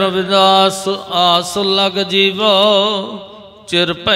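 A man's voice chanting a devotional verse in a slow melodic line with long, wavering held notes, dropping away briefly near the end.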